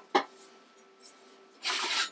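A sharp metal click, then near the end a short scraping rush as the drill press's head casting is lifted and slid up off its steel column.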